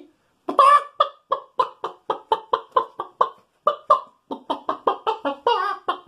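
A man clucking like a hen with his voice: a quick, even run of short clucks, about three or four a second, starting about half a second in.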